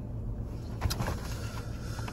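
Low, steady rumble of a car heard from inside the cabin, with a couple of faint clicks about a second in.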